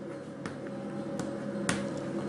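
Chalk on a blackboard while a word is written: three sharp taps spread over two seconds, over a steady low hum.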